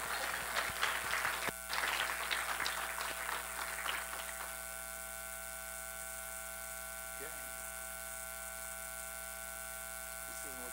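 Audience clapping, dying away about four and a half seconds in, leaving a steady hum.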